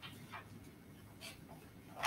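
Near silence: quiet room tone with a few faint, short noises.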